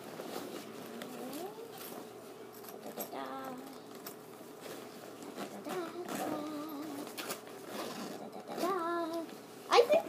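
Rustling and handling of a fabric backpack as a hand rummages through its pouch, with a few quiet, wordless vocal sounds along the way.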